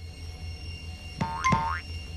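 Soft background music with two quick rising-pitch cartoon sound effects about a second in, the second sweeping higher than the first.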